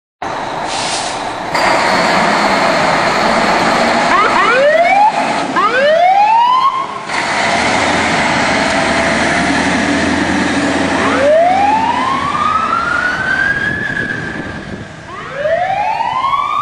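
Fire engine siren rising in pitch again and again, with two quick rises about four and six seconds in, then slower, longer rises later on, over the truck's engine and road noise. It is sounding on an emergency response run.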